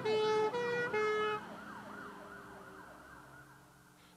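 Emergency-vehicle siren sound effect, rapidly sweeping up and down about three times a second. A steady horn-like tone sounds over it for the first second and a half, then the siren fades away.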